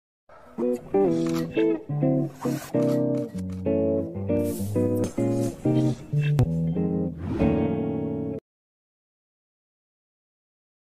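Intro music led by a plucked guitar playing a riff of notes and chords that change every fraction of a second. It stops abruptly about eight seconds in.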